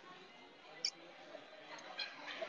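Quiet restaurant background with faint distant voices, broken by one short sharp click a little under a second in.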